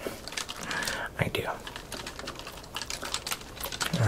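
Quick, light clicks and taps of hands handling small objects close to the microphone, like ASMR tapping on packaging, with a brief breathy whisper-like sound about a second in.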